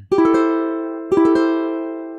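Ukulele chord strummed twice, about a second apart, each strum left ringing and fading.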